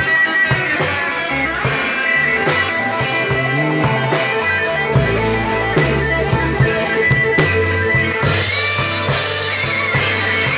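Live blues band playing an instrumental passage of a slow blues: electric guitars, electric bass and a drum kit with steady cymbal strokes. A long held high note runs through the middle.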